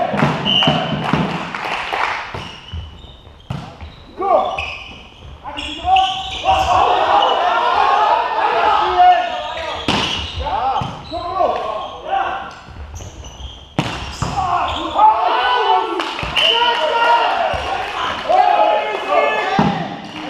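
Indoor volleyball rally: several sharp hits of hands and arms on the ball, with players' voices calling out over them, all ringing in a large sports hall.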